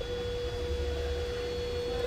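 Video door-entry intercom panel sounding its call tone after a button press: one steady, even tone held for about two seconds, signalling that the call is going through.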